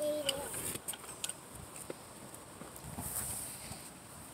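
A miniature pony eating hay from a plastic tub: soft rustling and crunching with scattered small clicks. A brief voice is heard right at the start.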